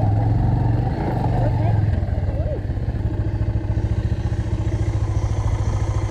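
Motorcycle engine running at low speed. A steady low hum gives way about two seconds in to a fast, even put-put of separate firing pulses.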